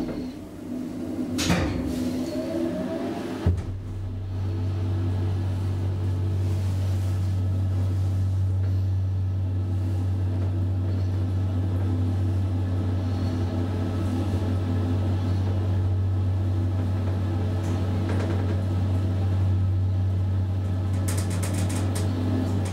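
Hydraulic elevator car travelling: after a few knocks and a sharp click about three and a half seconds in, a strong, steady low hum from the hydraulic drive starts and runs on.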